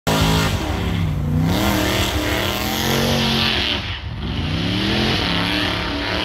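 A car engine revving hard through a burnout, its pitch rising and falling repeatedly with a short drop about four seconds in, over the hiss of spinning tires.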